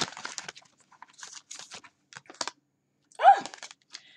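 A deck of tarot cards being shuffled and handled by hand: a run of short, dry papery rustles and snaps. A little after three seconds comes a brief vocal sound.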